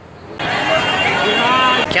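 Indistinct voices over a loud, steady rushing noise that cuts in suddenly about half a second in.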